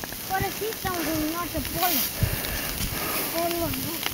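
A high-pitched voice speaking in short phrases, with faint steps through deep snow.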